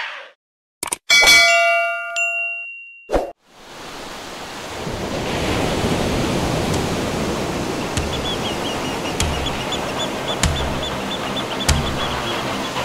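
Channel logo sting: a click, then a bright bell-like chime that rings and fades over about a second and a half. A steady rushing wash then swells in, with soft beats about every second and a quarter near the end as background music builds.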